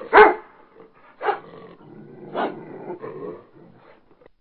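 A dog barking: three loud barks about a second apart, the first the loudest, followed by a few fainter ones near the end.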